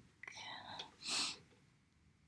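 A woman whispering under her breath, soft and breathy with no full voice, ending in a short hissing sound a little after a second in.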